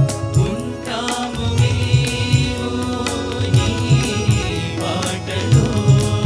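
Male group singing a Telugu devotional song (bhajan) together into microphones, with steady rhythmic percussion accompaniment.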